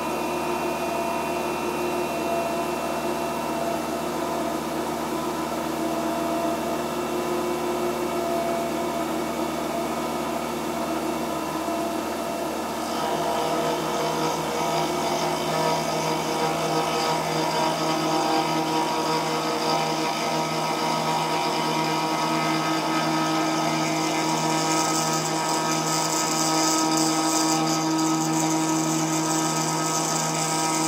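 Bridgeport CNC milling machine running with a steady hum of several tones. Partway through, the sound shifts as the end mill reaches the metal T-nut blank and starts cutting. A high-pitched cutting noise grows louder over the last quarter.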